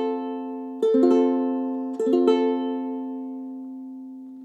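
An F major chord played on a concert ukulele: the last string is plucked at the very start, then the whole chord is struck twice, about one and two seconds in, and left to ring and fade.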